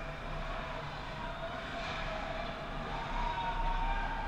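Ice rink ambience during hockey play: a steady rumble of the arena with faint scraping and clatter of skates and sticks on the ice. A thin steady tone sets in about three seconds in.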